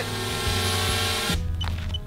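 Small quadcopter drone hovering close overhead: a steady whirring propeller hum that cuts off abruptly about a second and a half in.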